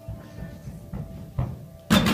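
A gymnast's running footsteps thudding on the carpeted floor, then a sharp, loud bang near the end as her feet strike the wooden springboard at take-off for a vault.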